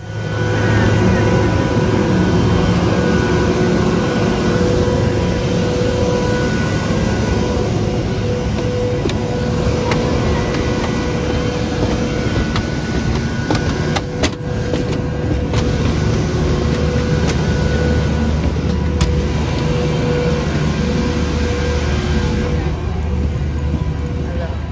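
Steady low rumble and hum of vehicle and aircraft noise on an airport apron, with a few light clicks about midway.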